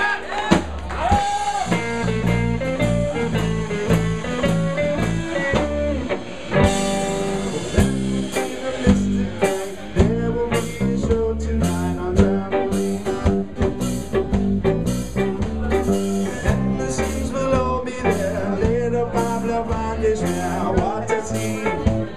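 Live band playing an instrumental jam on acoustic and electric guitars over a drum kit. The drum and cymbal hits come thicker in the second half.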